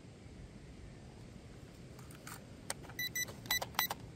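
Plastic clicks as a fresh battery is fitted to a K3 E99 toy quadcopter, then a run of short, high electronic beeps near the end as the drone and its controller power up and pair. Faint wind noise underneath.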